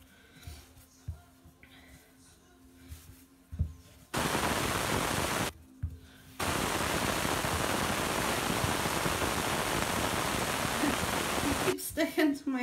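Soft thuds of dough being kneaded by hand on a worktop. Then a loud, steady hiss switches on suddenly about four seconds in, stops for about a second, and runs again until just before the end.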